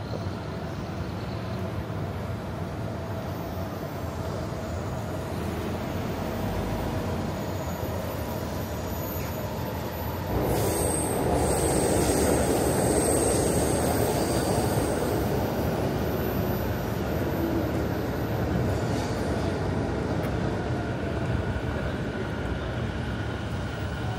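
A train running on the rails, growing suddenly louder about ten seconds in, with a thin high wheel squeal for a few seconds before it eases off.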